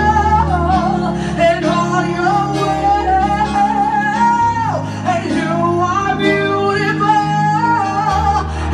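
A woman sings long, held melodic lines into a microphone over sustained electronic keyboard chords. Her voice slides sharply down about five seconds in.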